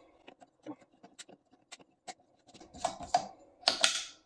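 Quick, irregular small clicks and taps of a metal click-style pop-up drain stopper being worked back into a bathroom sink drain, played sped up. A few louder bursts of handling noise come near the end.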